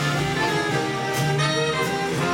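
Jazz big band playing: brass and saxophone sections hold chords over drums and upright bass, with cymbal strokes.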